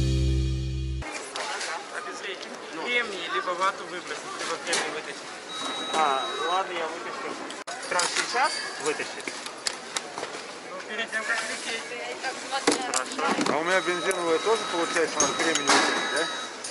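Background music cuts off about a second in, giving way to the hubbub of an airport security checkpoint. Several voices talk, plastic screening trays knock and clatter, and a short high electronic tone sounds twice.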